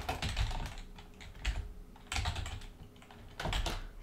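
Computer keyboard typing in about four short bursts of keystrokes with brief pauses between them.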